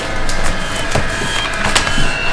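Sharp wooden knocks and clatters in quick succession, things being handled and knocked about on a wooden desk and drawer, over a steady musical tone.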